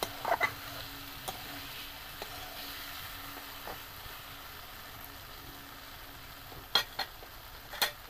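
Curry masala and potatoes sizzling in a metal wok while a steel spatula stirs and scrapes through them, with a few light clicks of the spatula on the pan and two sharp knocks near the end.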